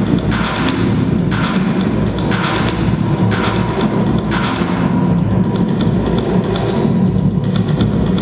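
Electronic music with a steady low drone and a swishing beat that comes round about once a second.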